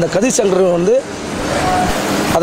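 A man speaking for about a second, then a rising rush of road traffic noise, a vehicle passing on the street.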